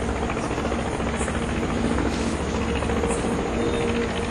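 Steady background drone: an even hiss with a low hum and faint steady tones, unchanging throughout.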